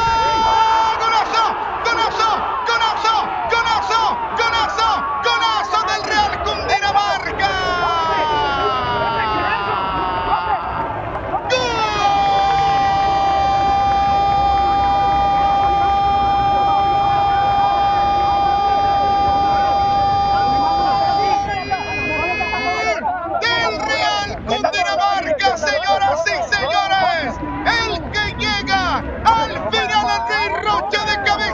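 Football TV commentator's goal call: excited fast shouting with falling cries, then one long held "gooool" of about ten seconds, then more rapid excited commentary.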